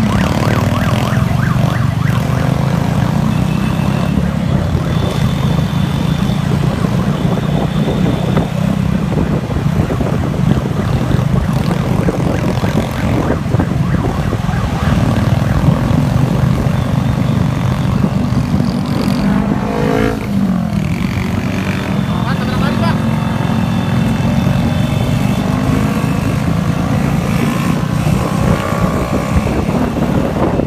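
Motorcycles riding through city traffic, heard from among them: a steady low engine and road rumble. High held tones come in now and then, and crossing pitch sweeps rise and fall about two-thirds of the way through.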